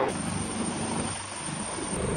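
Helicopter flying overhead: steady rotor noise, a fast low pulsing under a hiss, with a thin, steady high whine.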